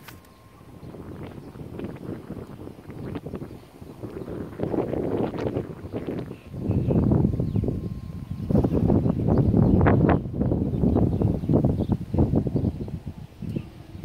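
Wind buffeting a phone's microphone outdoors, a low crackling rumble that comes in gusts, loudest in the second half.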